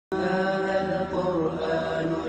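A voice chanting in long, held notes: the start of an Arabic chanted intro.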